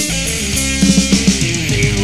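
Progressive rock band playing live, an instrumental passage without vocals: strummed guitar and bass guitar, with a quick run of low notes about a second in.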